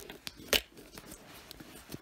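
Handling noise as the robot vacuum and camera are carried: one sharp knock about half a second in, then faint rustling and small clicks.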